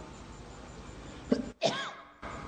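A man clearing his throat in two short sounds about one and a half seconds in, after a second or so of faint room hiss; the sound cuts off abruptly.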